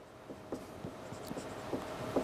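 Felt-tip marker writing on a whiteboard: a quick, irregular run of short, faint strokes and scratches as letters are written.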